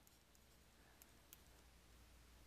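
Near silence: faint room tone with two soft clicks about a second in.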